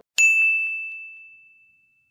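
A single high, bright bell-like ding, struck once and ringing down over about a second and a half, with dead silence before and after it.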